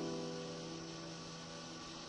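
Classical guitar notes ringing out and fading in a pause between phrases, while one low note keeps sounding steadily under them.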